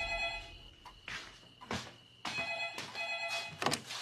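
Telephone ringing: two rings of about a second and a half each, a pause between them. Several deep thuds sound between and after the rings.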